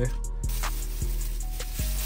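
Background music with a steady beat: sustained deep bass notes and regular drum hits.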